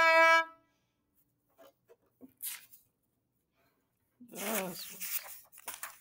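A held, bowed viola note ends about half a second in. A quiet stretch with a few faint knocks follows, and about four seconds in comes a short, wavering vocal sound from the player.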